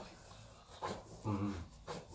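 A short low groan from a person having their back pressed during a massage, about midway, between two short sharp noises about a second apart.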